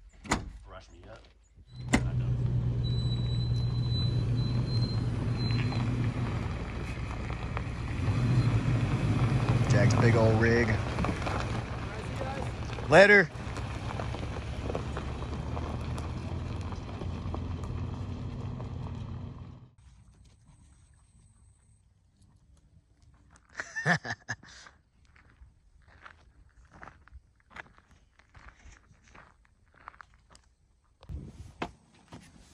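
A vehicle engine running steadily. It starts about two seconds in and cuts off suddenly near twenty seconds, with a brief loud pitched sound about thirteen seconds in. A few knocks follow once it is quieter.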